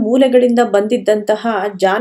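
Speech: one voice talking continuously, narration with no other sound standing out.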